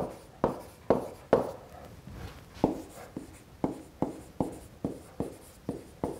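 A stylus writing on a tablet: a string of sharp, irregularly spaced clicks as the pen tip taps down stroke by stroke, with faint scratching between them.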